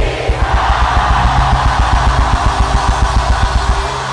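A congregation shouting 'Jesus' in unison, a loud crowd roar of about three and a half seconds, over rapid drumming from the church band, about seven beats a second.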